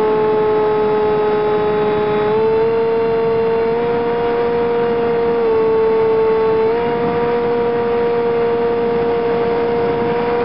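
Brushless outrunner electric motor and propeller of a Multiplex Easy Star RC plane, heard from on board: a loud, steady whine over a constant rushing noise. The pitch steps up a little about two seconds in, dips briefly around five and a half seconds, then rises again, as the throttle is adjusted.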